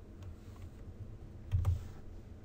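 A few faint clicks from a computer keyboard and mouse, with a soft low thump about one and a half seconds in.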